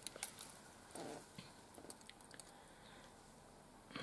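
Near silence with a few faint, scattered small clicks of metal jewellery pliers and chain links being handled.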